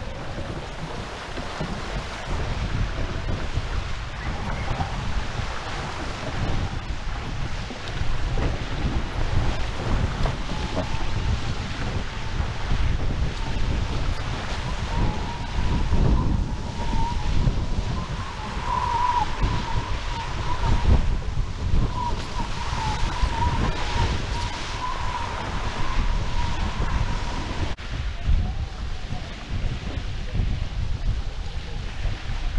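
Wind buffeting the microphone and water rushing past the hulls of an F18 racing catamaran sailing fast under spinnaker. About halfway through, a high wavering whistle joins in and stops shortly before the end.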